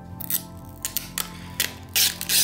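Thin plastic protective film being peeled off the clear back of a hard phone case, in several short crackling rips.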